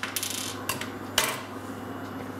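A few small sharp clicks and taps, the loudest a little over a second in, as a small metal tool works the sealing ball out of the end of a plastic semen straw.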